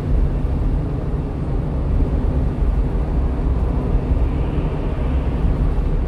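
Steady engine and tyre rumble of a small truck cruising on a highway, heard from inside the cab.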